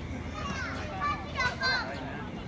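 High-pitched children's voices chattering and calling out in the background, loudest about a second and a half in, over a low steady rumble.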